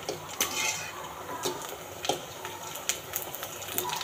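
A metal fork clinking and scraping against a metal kadai while pani puri puris fry in oil, with a faint frying sizzle underneath. The clicks come at irregular moments, a few each second.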